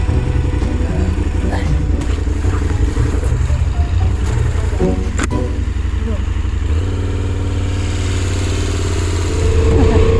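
KTM adventure motorcycle's engine running as the bike rides off along a muddy track, with heavy wind rumble on the helmet-mounted microphone. A sharp click comes about five seconds in, and the engine note settles into a steadier hum from about seven seconds.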